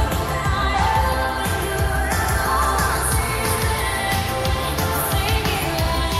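Pop song with sung vocals over a steady beat and heavy bass, processed as 8D audio, a panning, reverberant binaural effect.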